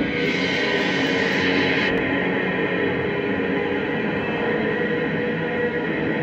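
Electric guitar music: a dense, sustained wash of held, droning notes. The brightest top end drops away about two seconds in.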